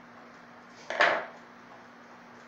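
A screwdriver and pliers set down on a paper-covered wooden workbench: one short metallic clatter about a second in that rings briefly, over a faint steady hum.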